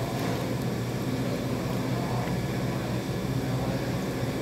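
A steady low machine hum that does not change, of the kind a building's air-conditioning or ventilation unit makes.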